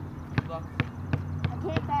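Basketball being dribbled on asphalt: a steady run of sharp bounces, about five in two seconds.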